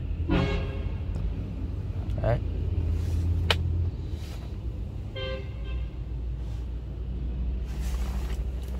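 Low steady rumble of road traffic heard from inside a car's cabin, with a short vehicle horn toot about five seconds in.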